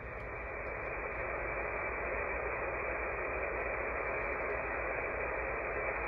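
AM radio static from a KiwiSDR web receiver tuned to 26.765 MHz: an even hiss with no voice in it, growing slightly louder over the first couple of seconds and then steady.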